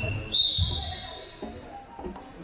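Handball referee's whistle: one high, steady blast about a third of a second in that fades out over about a second, stopping play.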